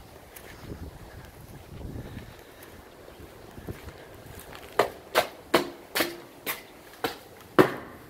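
Footsteps on a hard floor: about seven steps, roughly two a second, starting about five seconds in. Faint outdoor background noise comes before them.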